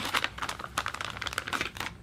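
Small clear plastic parts bag crinkling as it is handled, a dense run of crackles that dies away just before the end.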